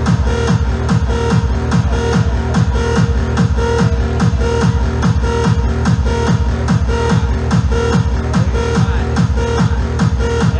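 Hard trance music from a DJ set: a steady four-on-the-floor kick drum, about two and a half beats a second, with a pulsing synth riff over it.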